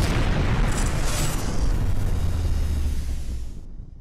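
Cinematic explosion sound effect: a long blast with heavy bass, dying away and cutting off shortly before the end.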